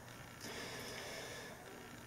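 A faint, soft breath-like hiss lasting about a second, from a man smoking a cigar, over quiet room tone.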